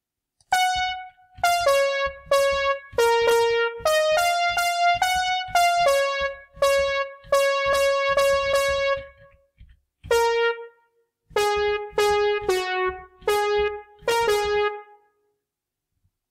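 Notation software's piano playback sounding single melody notes one at a time, about twenty of them in uneven phrases with short gaps, as notes of the melody stave are selected in turn.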